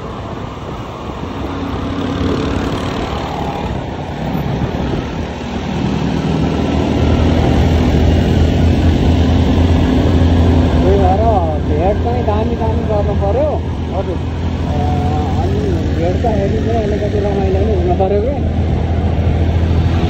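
Motor scooter engine running with road and wind noise while riding in traffic; the low engine hum grows louder about seven seconds in. A voice is heard over the ride in the middle part.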